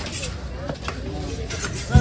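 A few scattered sharp knocks and taps of a large knife on a wooden stump chopping block, over background voices.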